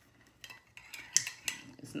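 Metal spoon clinking several times against a metal tumbler of tea, in short sharp clinks, as the tea is stirred.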